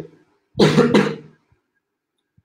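A man's short cough, in two quick pushes, about half a second in.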